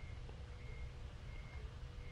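Quiet background in a pause between sentences: a low rumble with a faint steady hum, and a faint high beep repeating about three times.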